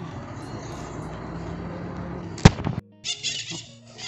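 Outdoor street ambience with a steady low hum, broken by a single sharp, loud click about two and a half seconds in. After a brief drop-out, background music starts near the end.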